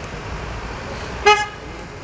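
A vehicle horn gives one short toot a little over a second in, over a steady low background of street noise.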